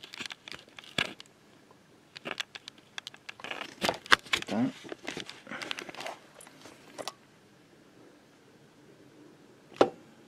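Handling noise from a tyre inflator gauge's hose and chuck on a scooter tyre valve: scattered sharp clicks and short rustles for the first several seconds, then quiet with a single click near the end.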